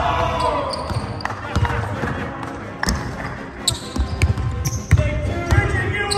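A basketball bouncing on a hardwood gym floor, a few irregular thuds about a second apart, with people shouting and calling out.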